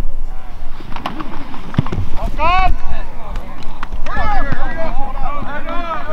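Several voices shouting and cheering over one another as a football play runs, louder and denser from about four seconds in. A couple of sharp knocks come in the first two seconds.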